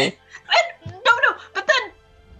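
Voices talking in short bursts over faint background music.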